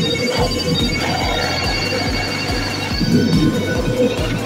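Electronic effect music from a P High School Fleet All Star pachinko machine, with a steady beat of about four kicks a second and high chiming tones over it.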